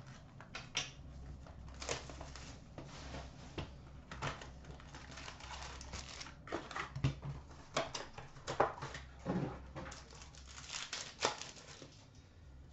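A 2015-16 Upper Deck SPx hockey card box being opened and its foil-wrapped packs handled and set down: irregular rustling, crinkling and light taps, some sharper clicks clustered in the second half.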